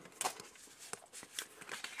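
A stack of trading cards handled in the hands, with a few faint clicks and slides as the cards are shifted.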